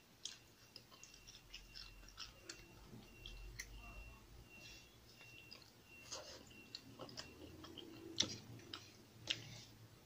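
Close-miked eating sounds of buttered shrimp: shell crackling and sticky clicks as a shrimp is peeled by hand, then chewing, with sharper clicks and smacks late on.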